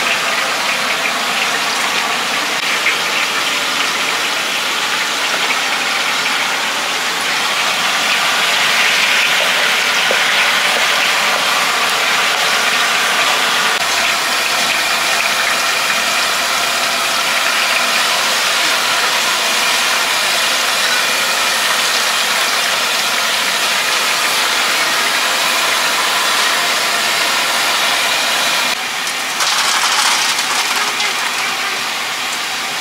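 Chicken pieces deep-frying in a large wok of hot oil: a loud, steady sizzle that swells a little about a third of the way through.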